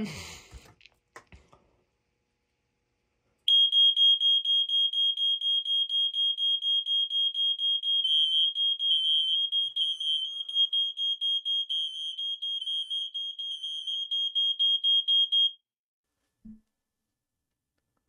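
Two hardwired, interconnected smoke alarms sounding their horns as a button test: a loud, steady, high-pitched tone that starts a few seconds in. A second alarm's tone at a slightly different pitch joins a few seconds later, showing the interconnect has triggered it. Both cut off together after about twelve seconds, followed by a brief low thump.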